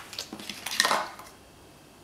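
Makeup containers and tools clattering and clicking as they are picked up and set down, a quick run of clicks with the loudest clatter just before the middle.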